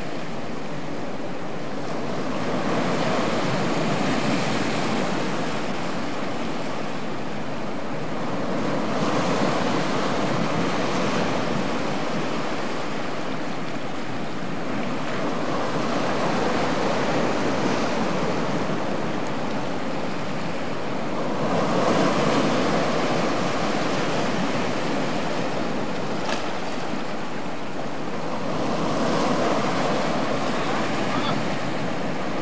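Sea surf breaking and washing in, a steady rushing that swells louder about every six seconds as each wave comes in.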